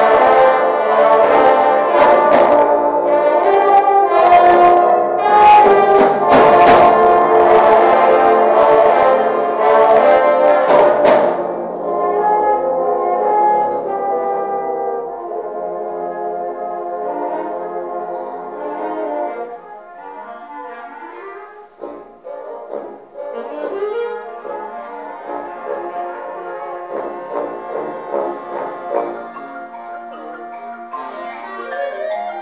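Concert band playing a loud full passage led by brass, punctuated by percussion strikes, which breaks off suddenly about eleven seconds in; a softer, quieter passage follows and thins out further past the twenty-second mark.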